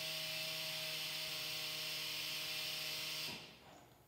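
HYTORC jGun Digital pneumatic torque multiplier's air motor running while loosening a flange nut: a steady hum of one pitch over a hiss of air, fading out about three seconds in.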